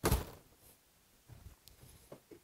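A single sharp thump, then a few faint light knocks and rustles: handling noise as the drill and its bit are set in place over the wood.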